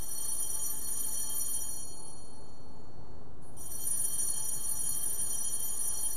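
A small altar bell rung twice, about three and a half seconds apart, each strike a high, bright ring that hangs and fades over two to three seconds: the sanctus bell marking the elevation of the chalice after the words of institution.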